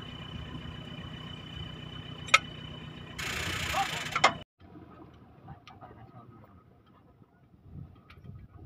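Metal clinks from hand tools and parts as a loose driveshaft joint is worked on under an off-road 4x4. There is one sharp tap a little over two seconds in, over a steady low rumble and a brief burst of hiss. About halfway through, the rumble stops suddenly and only faint clicks remain.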